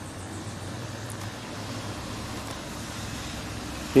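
Steady outdoor background noise, an even hiss with a faint low hum and no distinct events.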